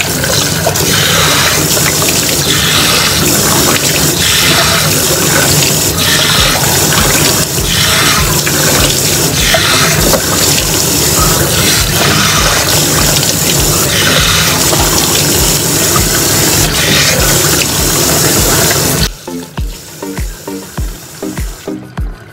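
A bathroom sink tap running, a loud steady rush of water, as hands splash water onto a face to rinse off face wash; the water stops about 19 seconds in. Background music with a steady beat plays underneath throughout.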